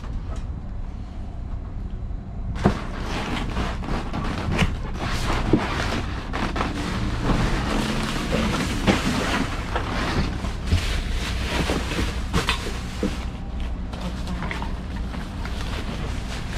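Plastic trash bags and cardboard boxes rustling, crinkling and knocking as hands dig through a dumpster, busiest from about two and a half seconds in, over a steady low rumble.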